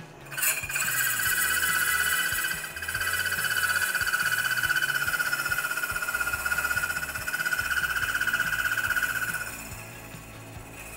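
Slotting saw on a milling machine cutting a narrow slot into a metal brake arm: a steady high whine that starts about half a second in and stops shortly before the end.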